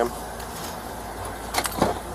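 Steady low hum of a motor vehicle close by, with a few short clicks and knocks near the end.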